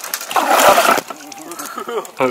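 A hooked black bass thrashing at the surface beside the boat during the fight: one loud splash about half a second in, lasting about half a second.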